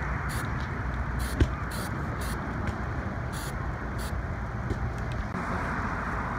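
Several short hisses from an aerosol can of galvanizing compound sprayed onto the cut end of a galvanized steel pipe, over a steady low outdoor rumble.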